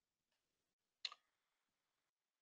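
Near silence, with one faint short click about a second in.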